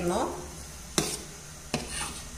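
A steel ladle scooping thick idli batter from a stainless steel bowl, striking the bowl sharply twice, about a second in and again near the end.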